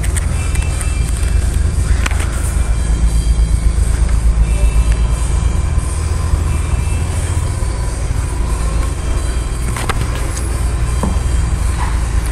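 A V8 engine idling with a steady low rumble, most likely the 1977 Corvette's 350 cubic-inch V8.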